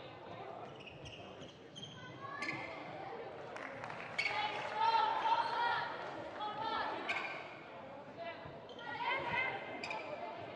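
A basketball bouncing a few separate times on a hardwood court, with players' voices calling out in the arena.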